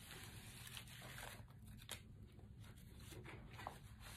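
Faint rustling of paper as the pages of a handmade paper-and-fabric journal are turned and handled, with a few soft crackles.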